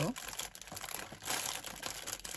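A clear cellophane bag crinkling and rustling as fingers work it open, with a run of small crackles that grows louder past the middle.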